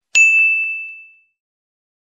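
A single bright notification-bell 'ding' sound effect from the subscribe bell. It strikes just after the start and rings out, fading within about a second.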